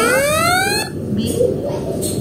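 Electronic beep from the CodeWiz board's buzzer, set off by its button: one rising tone, under a second long, with background chatter.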